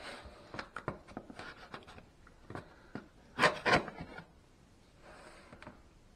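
Knife blade cutting and scraping along packing tape on a cardboard box: a run of short scratches and taps, with a louder cluster of scrapes about three and a half seconds in.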